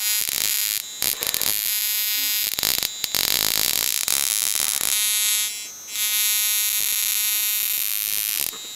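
High-voltage spark from a flyback transformer driven by a 555-timer ignition coil driver: a loud, steady electrical buzz with a high whine and hiss. It breaks off briefly about five and a half seconds in, then resumes.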